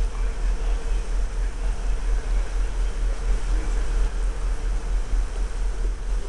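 Wind buffeting the microphone on a ship's open deck: an uneven low rumble under a steady rushing noise, with a faint steady hum.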